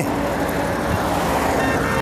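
Road traffic on a highway: a steady rush of passing vehicles.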